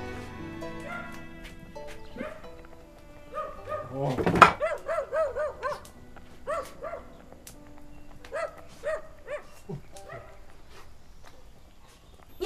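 Soft music fades out over the first couple of seconds. Then a dog gives runs of short, high whimpering yips, several in quick succession, with a single knock about four seconds in as the loudest sound.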